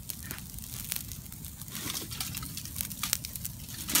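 Wood campfire crackling and popping in scattered sharp snaps over a steady low rumble. Right at the end comes a brief crinkle of aluminium foil as the foil-wrapped camp oven is taken hold of.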